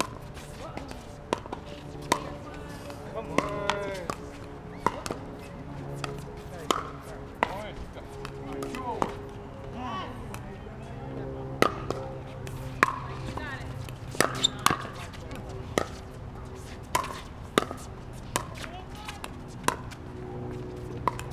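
Pickleball paddles hitting a plastic pickleball: a long run of sharp pops at irregular intervals, some loud and close, others fainter.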